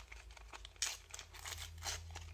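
A Panini FIFA 365 2018 sticker packet being torn and peeled open by hand: a few short ripping and crinkling sounds, the loudest a little under a second in and another near the end. The packet is awkward to open.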